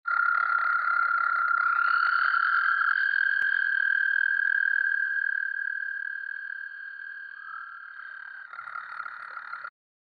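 American toads giving their long, steady, high-pitched trill, a second trill at a slightly different pitch overlapping the first from about two seconds in. The calling fades in the second half and cuts off abruptly just before the end.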